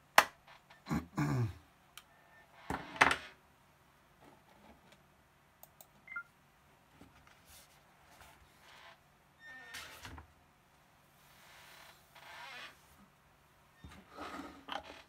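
A sharp click, then a man's cough about a second in and another short loud burst about three seconds in, followed by scattered faint knocks and rustles of a camera and a book being handled on a wooden desk.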